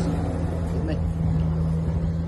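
A steady machine hum, one level tone over a low rumble, with a couple of faint brief sounds on top.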